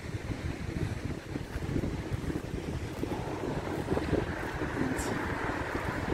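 Wind buffeting the phone's microphone in uneven, gusty low rumbles.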